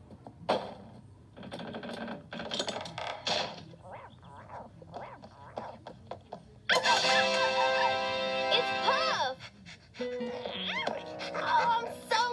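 Cartoon soundtrack played from a computer monitor. Character voices come first, then a sudden, louder burst of music with held chords about seven seconds in, with gliding tones over the music near the end.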